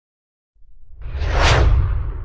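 Logo-intro whoosh sound effect. Silence gives way to a deep bass rumble about half a second in, and a whoosh swells over it, peaking about a second and a half in and then trailing off.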